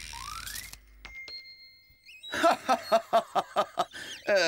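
Cartoon sound effects for a hand-wound tape measure: a quick rising whistle, a held high tone, then a fast run of clicks, about six a second, through the second half.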